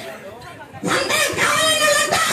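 A person's voice raised in one long, high-pitched shouted call, starting just under a second in and held to the end, with no clear words.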